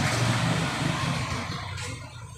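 A passing motor vehicle's engine and road noise, a steady rushing hum that fades away toward the end.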